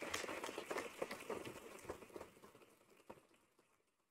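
A room full of people clapping, dying away over about two and a half seconds, then a single faint click.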